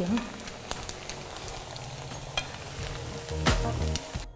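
Rice vegetable cutlets deep-frying in hot oil in an iron kadai: a steady sizzle with scattered crackles and pops. A louder low swell comes in near the end.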